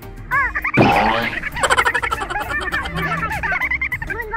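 A dense run of many overlapping chirping, croaking animal-like calls, with a louder noisy burst about a second in.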